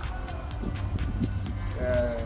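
Low rumble, then near the end a man's voice begins with a drawn-out, slightly falling vowel.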